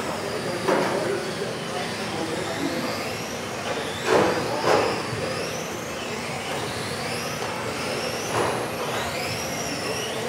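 Several electric 1:10 RC touring cars racing in a hall, their motors whining and sweeping up and down in pitch as they accelerate and brake, over tyre noise and the hall's echo. Two louder bursts come about four seconds in.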